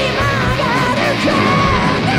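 Melodic speed metal band playing live: a male vocalist sings a high, wavering line over bass, keyboards and drums.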